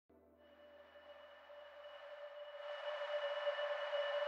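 The opening swell of a song: a single held, airy synthesizer pad chord that fades in from near silence and grows steadily louder.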